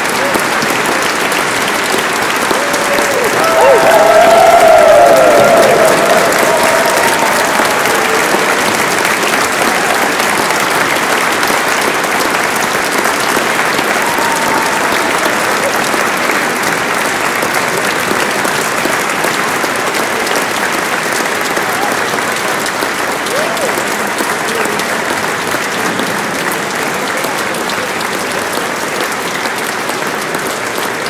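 Audience applauding steadily, swelling about four seconds in with voices calling out over the clapping, then slowly easing off.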